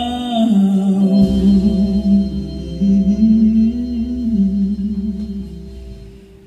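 Live band music: a slow, sustained melody line with gliding notes over a held bass note, fading down near the end.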